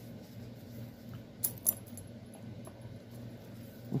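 Quiet cross-stitching handling: a few light clicks and ticks as the needle and thread are worked, with one sharper click about a second and a half in, over a steady low hum.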